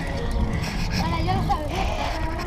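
Steady low rumble of wind on a handlebar-mounted action camera and tyre noise as a mountain bike rolls along asphalt, with voices talking over it from about half a second in.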